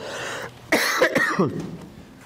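A man coughing into his fist: a soft breathy cough, then a louder harsh cough with a voiced rasp about three-quarters of a second in.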